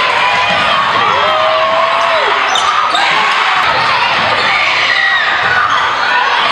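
Basketball dribbled hard on a gym floor during a game, with spectators' voices and shouting all through and one long held call about a second in.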